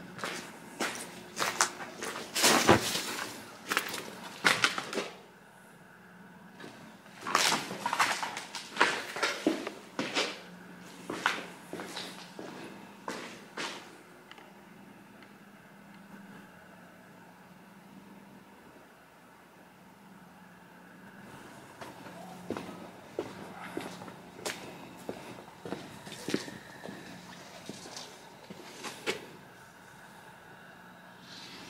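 Footsteps over debris-strewn ground and floors, coming in irregular runs of steps with a quieter pause about halfway through. A faint steady low hum sits underneath.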